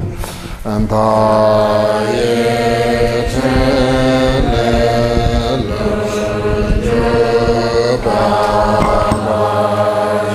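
Tibetan Buddhist liturgical chanting in a man's voice, held notes shifting pitch about once a second over a steady low hum.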